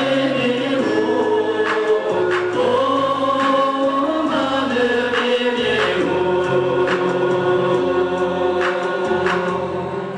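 Male vocal group singing a slow Tibetan song live through a PA, several voices holding long notes together in chant-like harmony.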